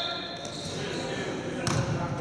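A basketball bounces once on the sports-hall floor near the end, with a sharp knock that rings in the large hall. Faint voices carry under it.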